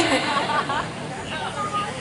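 Murmur of audience chatter, with a few faint voices over it, quieter than close-miked speech.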